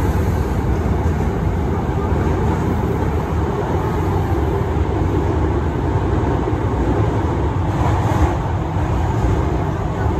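Hankyu commuter train running, heard from inside the car: a steady low rumble of wheels on rails, with a brief rise in hiss about eight seconds in.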